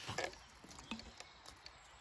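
A few faint clicks of handling against a quiet background, with a short human voice sound just after the start.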